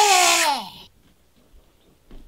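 A high, drawn-out vocal sound that falls in pitch and dies away about a second in, followed by quiet.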